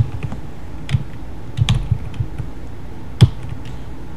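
Computer keyboard keystrokes: a handful of separate, irregularly spaced key clicks as a search word is typed, the loudest about three seconds in.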